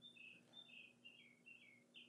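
Near silence with several faint, high chirps that fall in pitch, coming in quick pairs, like a small bird calling.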